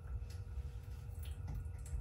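Low steady hum in a kitchen with a few faint clicks and ticks from a small plastic supplement container being handled.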